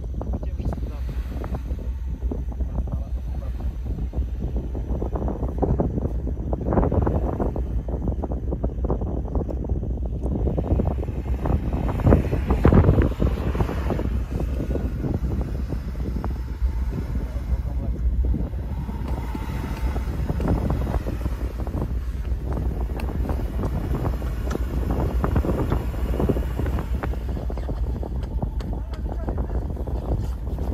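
Wind buffeting the microphone, over the engine of a Land Rover Discovery driving slowly through deep snow ruts toward the microphone. The wind noise is heaviest about twelve seconds in.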